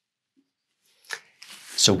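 Marker pen drawing on a whiteboard: after a second of silence, a short sharp scratch and a brief hissing stroke as an arrowhead is drawn.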